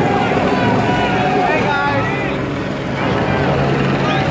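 Steady engine and road noise heard inside a moving car, with indistinct voices talking over it.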